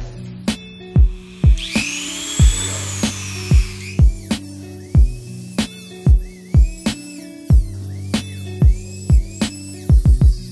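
Music with a steady drum beat. About two seconds in, a high whine rises and then sags for about two seconds: a corded rotary tool cutting into the plastic of a Canon EF 50mm f/1.8 STM lens.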